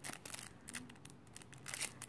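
Clear plastic cellophane packaging crinkling in the hands as it is handled, a rapid, irregular run of small crackles.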